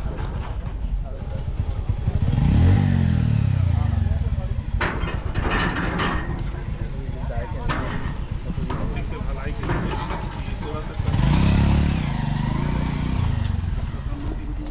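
Two motorcycles go by one after the other, about two seconds in and again about eleven seconds in. Each engine's pitch rises and then falls as it passes, over steady road noise.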